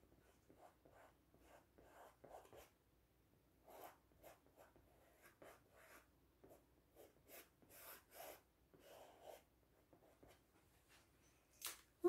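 Faint, irregular strokes of a paintbrush dabbing and dragging paint across a stretched canvas, with one sharper tap near the end.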